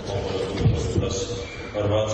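A man speaking in a lecture hall, picked up on a phone's microphone, with two low thumps, one a little after half a second in and one at about a second.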